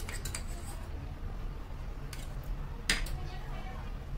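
Kitchen utensils clinking and tapping against a nonstick frying pan of vegetables, a few light clicks at first and one sharper click about three seconds in, over a steady low hum.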